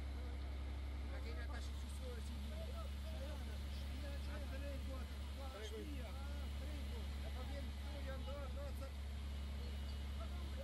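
Steady low engine drone, a fire engine's motor running its pump to feed a firefighting hose, with many short voices calling over it.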